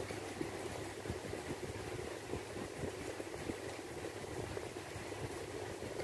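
Steady low mechanical hum running throughout, with small scattered clicks and rustles of fingers picking fried fish off its bones on a stainless steel plate.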